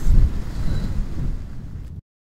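Wind buffeting the microphone outdoors: an uneven low rumble that gradually fades and then cuts off abruptly at the end.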